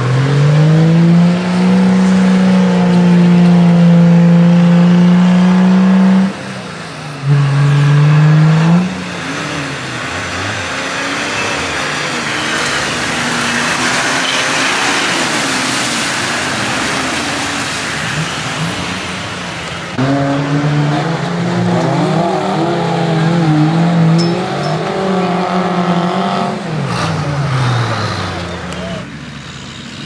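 Diesel Nissan Patrol off-roader's engine revving hard through deep mud, held high for several seconds, dropping briefly about six seconds in and blipping again. In the middle the engine pitch fades under a rushing noise from wheels churning mud, then the engine revs up and down again before falling away near the end.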